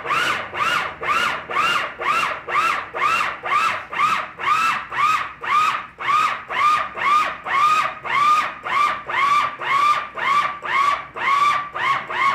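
Food processor pulsed over and over, about two pulses a second. Its motor whirs up and back down with each press as drop-biscuit dough of flour, butter and buttermilk comes together into a dough ball.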